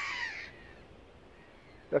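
A crow caws once, a call that falls slightly in pitch and dies away about half a second in.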